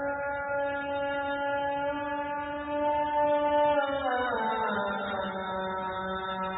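A man's voice chanting through a microphone, holding one long note that slides down in pitch about four seconds in and settles on a lower held note.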